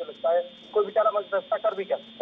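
A man talking, with a thin, telephone-like sound as over a remote call line.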